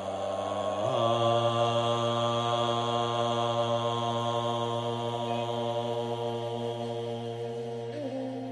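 A man's voice chanting a Bon mantra as one long held note, rising in pitch about a second in and then held steady.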